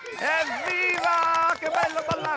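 A high, sing-song voice calling out without clear words, holding one note for a moment about a second in.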